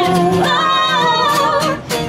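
Live pop song: women's voices singing held notes with vibrato, accompanied by an acoustic guitar.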